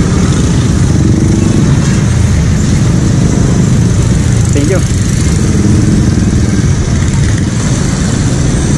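Motorcycle engine idling close by, with other motorcycles running around it; the sound is a loud, steady, rough low rumble.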